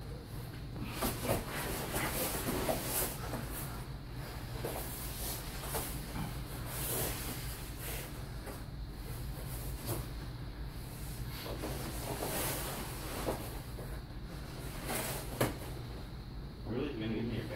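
Two grapplers rolling on foam puzzle mats: rustle and scuff of a jiu-jitsu gi and bodies shifting and pressing on the mats, with a few sharper thumps, over a steady low hum.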